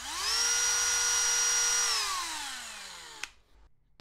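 Cordless Dremel rotary tool with a cutoff wheel fitted, running free: its whine rises quickly as it spins up, holds steady for about a second and a half, then falls in pitch as it winds down after switch-off, cutting off about three seconds in.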